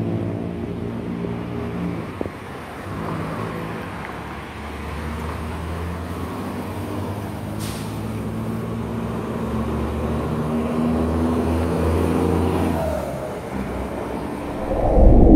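Street traffic: car engines running and passing at low speed, with a sharp click about two seconds in and a short hiss a little past the middle.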